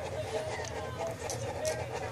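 Newborn mastiff puppies nursing: soft suckling sounds with a few short squeaks.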